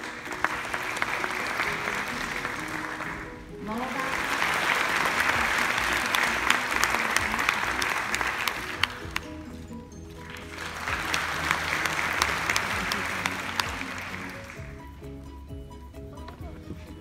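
Audience applause in three rounds of a few seconds each, separated by brief lulls, over quiet background music.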